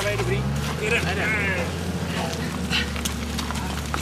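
Heavy touring motorcycle's engine revving up at the start and then holding a steady raised drone under load, as the stuck bike is pushed up a loose dirt slope. Voices call out over it.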